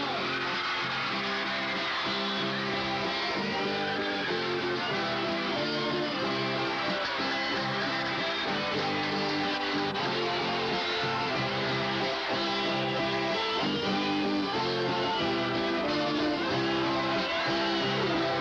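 Music led by strummed guitar, its chords changing every second or so.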